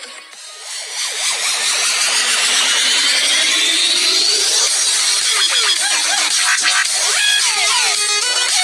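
Electronic intro music with sound effects: a dense noisy sweep that builds and rises over the first few seconds, then short gliding synth tones near the end.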